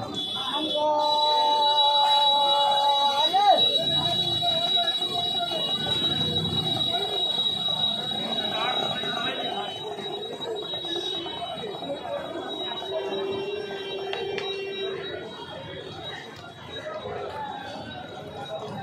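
Indistinct voices talking in the background over a steady high-pitched tone. About a second in, a held pitched tone lasts a couple of seconds and ends in a quick wavering glide.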